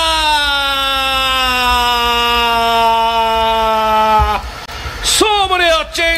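A football commentator's drawn-out goal cry: one long held shout that slowly falls in pitch for about four seconds. After a brief breath, a fresh shout begins near the end.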